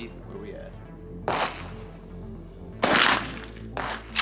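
A 12-gauge Mossberg 500 pump-action shotgun firing a slug: one loud shot about three seconds in, with a trailing echo. A shorter sharp knock comes about a second in and a small click near the end, over background music.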